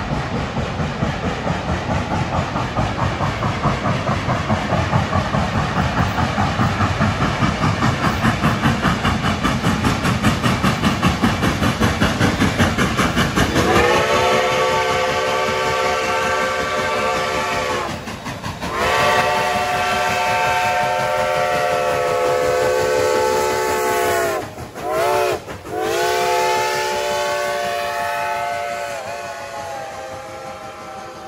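Reading & Northern 2102, a Reading T-1 class 4-8-4 steam locomotive, working hard with rapid, rhythmic exhaust chuffs, then sounding its steam whistle: two long blasts, a short one and a final long one, the standard grade-crossing signal.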